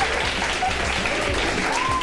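Studio audience applauding over background music.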